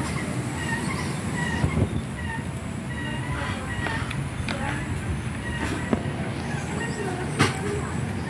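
Kittens eating from a plastic tub and jostling over the food, with a few sharp clicks and short high-pitched calls over a steady low rumble.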